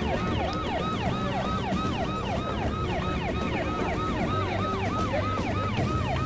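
Vehicle siren on a fast yelp, its pitch rising and falling about four times a second, with a low steady hum beneath.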